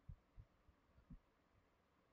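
Near silence: room tone, with a few faint, short low thumps in the first second or so.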